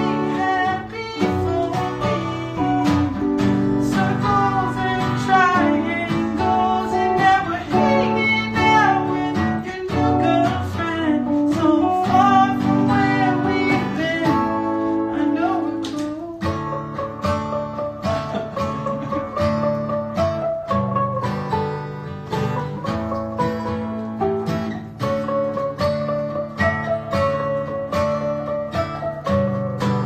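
Live acoustic-and-electric duo: a man singing over a strummed acoustic guitar, with a clean electric guitar playing alongside.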